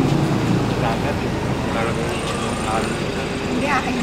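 Street noise: a steady motor-vehicle engine hum with traffic, and people talking. A low engine drone fades away in the first half second.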